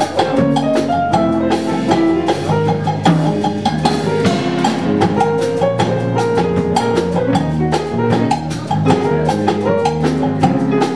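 Live jazz quartet of saxophone, bass, drum kit and piano playing a ballad, with held pitched notes over a steady beat of sharp strokes on the kit.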